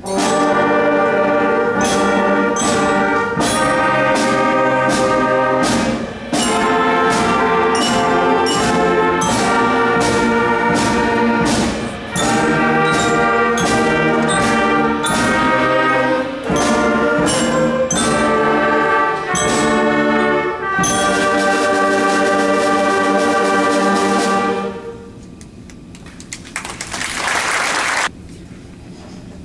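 Middle school concert band playing sustained brass-led chords, with brief breaks between phrases, stopping about three seconds before the end. A short rush of noise follows near the end.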